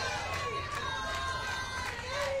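Ballpark crowd at a softball game: a general murmur of spectators with distant voices calling out and shouting from the stands and dugouts.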